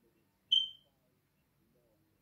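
A single short, high-pitched beep about half a second in, starting sharply and fading quickly, over faint speech.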